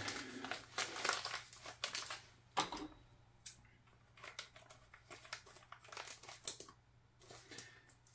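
Crinkling and rustling of a plastic packet of model ballast being handled, with scattered small clicks. Busy for the first three seconds, then sparse and faint.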